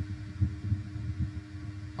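Low, uneven rumbling hum of background noise picked up by the microphone, with no speech.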